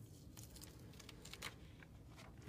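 Near silence with a few faint rustles of paper as a taped sketch sheet is peeled up off watercolor paper; the clearest rustle comes about three quarters of the way in.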